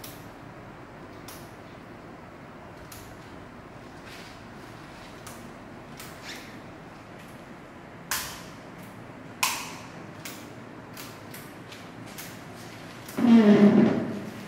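Miniature circuit breakers on an electrical training board being switched on one after another: a string of light clicks, then two louder snaps about 8 and 9.5 seconds in. The breakers stay on rather than tripping, the sign that the faults have been cleared. A brief, louder pitched sound comes near the end.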